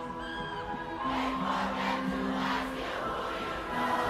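Live concert music in a quiet passage: sustained synth chords held under a crowd shouting and cheering, the crowd rising from about a second in.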